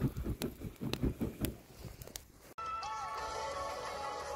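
Wood campfire crackling with scattered sharp pops, then an abrupt cut about two and a half seconds in to steady background music.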